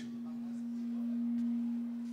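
A single steady low pure tone, held unchanged in pitch, swelling a little toward the middle and easing again.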